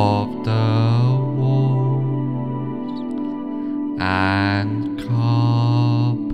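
Slow ambient meditation music: sustained low drone notes under swelling pitched tones that glide upward near the start and again about four seconds in.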